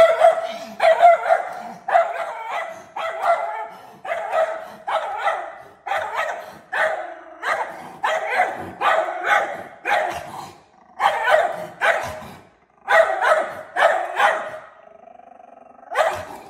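Schnauzer barking repeatedly at a black bear, about two barks a second, with a short break near the end before the barking stops.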